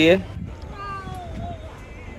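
A faint single animal call about a second long, falling slowly in pitch, heard after a man's last spoken word.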